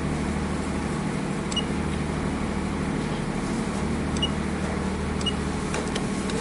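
Steady low hum of room machinery under a constant background noise, with a few faint short ticks.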